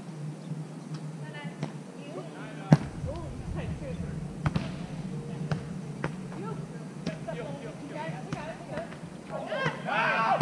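Volleyball struck by players' hands and forearms during a sand volleyball rally: a series of sharp smacks, the loudest about three seconds in. Players call out between the hits, louder near the end.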